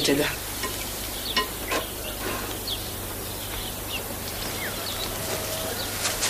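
Steady hiss and low hum with scattered faint clicks and a few short, high chirps.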